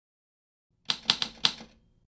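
Four quick typewriter key strikes, used as a typing sound effect for a title appearing on screen.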